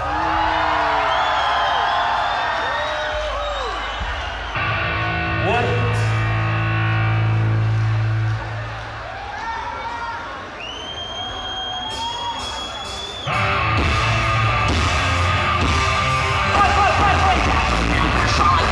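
Live rock band playing the intro of a song, electric guitar and bass with shouts from the audience. The full band comes in louder about thirteen seconds in.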